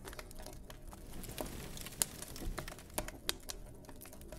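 Faint, irregular crackling clicks, a few strokes a second, with a couple of sharper clicks standing out.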